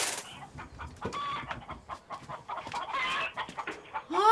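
Chickens clucking in short repeated calls, in a cluster about a second in and another near three seconds. A brief rustling or scraping burst comes right at the start.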